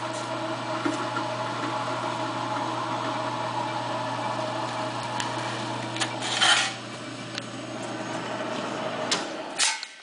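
Lockformer 18-gauge power flanger's 3/4 hp electric motor and forming rolls running steadily with a constant hum, as a curved piece of sheet metal is fed through to turn a radius flange. A brief noisy burst comes about six and a half seconds in, then a couple of clicks, and the hum cuts off just before the end.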